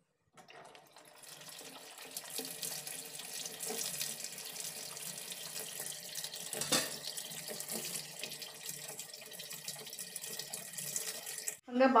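IFB top-loading washing machine filling: water pours from the inlet into the empty drum with a steady splashing rush that builds over the first couple of seconds. It cuts off suddenly near the end.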